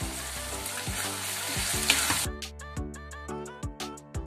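Chopped vegetable sauce frying in oil in a pan, sizzling, over background music. A little past halfway the sizzle cuts off suddenly and only the music goes on.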